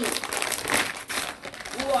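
Clear plastic packaging crinkling and rustling as a large dried squid is pulled out of it, with a string of quick crackles loudest a little under a second in.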